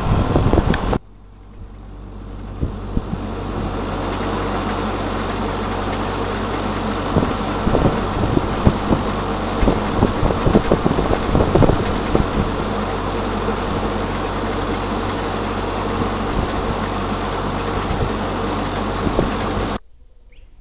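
A sailboat's engine running steadily under way, heard from on board. It fades in over a few seconds after a sudden cut about a second in, holds steady, and cuts off abruptly just before the end.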